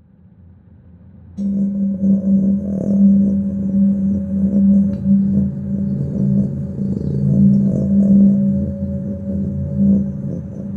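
Ambient music: a low drone swells in, and about a second and a half in a louder sustained tone enters suddenly over it, held steadily with a slow wavering in strength.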